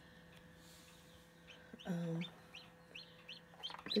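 Newly hatched chick peeping: four or five short, high peeps spread over the second half, heard through the incubator's dome.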